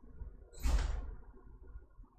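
A single short noisy sound with a low thud underneath, starting about half a second in and lasting about half a second, set against faint room noise.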